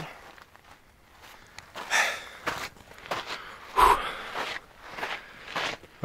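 Footsteps on a loose gravel trail, an uneven run of steps with one louder step about four seconds in.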